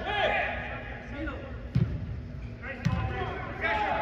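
A soccer ball kicked twice on artificial turf, two sharp thuds about a second apart, among players' shouts in a large indoor hall.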